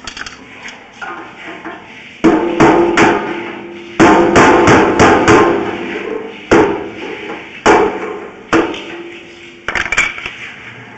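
A series of loud, sharp knocks, each with a brief metallic-sounding ring. They come in quick runs of several strikes, then as single knocks about a second apart.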